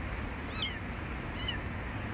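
A hidden kitten crying with two faint, short, high-pitched mews, about half a second in and again near a second and a half.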